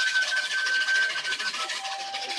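Washboard scraped in a fast, even rhythm, with a thin, high whistle-like tone held over it for about a second and a half.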